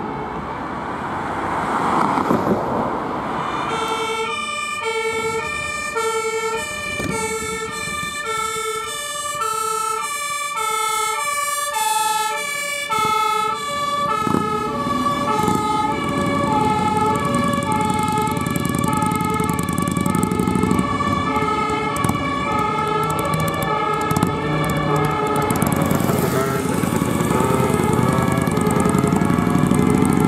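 German fire engines' two-tone sirens (Martinshorn) alternating high and low about once a second, starting about four seconds in, with two sirens overlapping out of step for a while. The sirens then fade as truck diesel engines and traffic noise grow louder toward the end.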